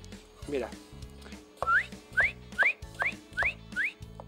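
Six short rising whistles, about two a second, over steady background music.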